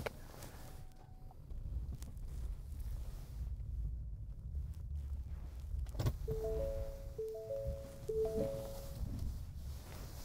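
Low, steady rumble inside a Ford F150 Lightning's cab on a snowy road. About a second in there is a single short electronic beep, and from about six seconds in a three-note electronic chime sounds three times, about a second apart.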